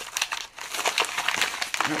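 Crinkling and rustling of a yellow padded mailer being handled and opened by hand, in quick irregular crackles. A spoken word comes near the end.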